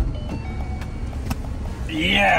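Car engine idling, heard from inside the cabin, with music playing over it.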